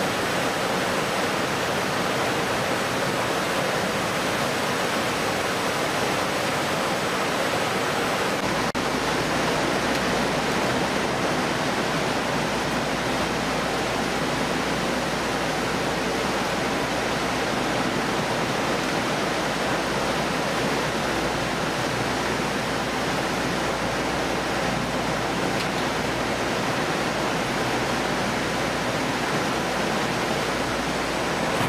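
Steady rushing noise of a fish-processing line at work: conveyors, machinery and running rinse water, with a faint steady high whine. A low rumble joins about eight seconds in.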